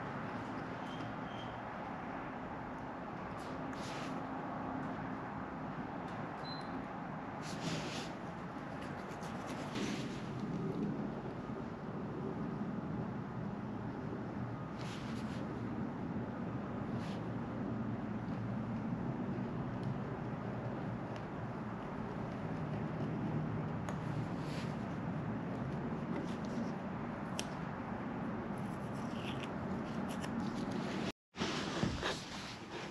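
Hobby knife blade scoring and trimming masking tape on a painted surface: short, light scratches every few seconds over a steady background noise.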